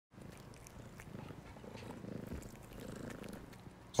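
A domestic cat purring softly, a low steady rumble.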